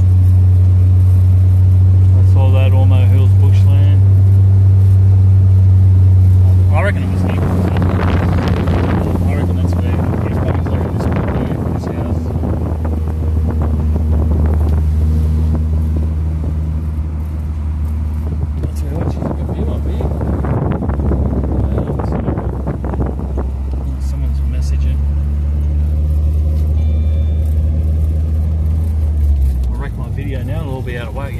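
Car driving, heard from inside the cabin: a steady low engine drone. From about seven seconds in a louder rushing road noise comes in and the drone settles lower, then the drone falls away just before the end.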